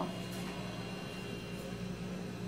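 A steady low electrical hum with a faint thin high whine: room background noise, with one or two faint soft clicks.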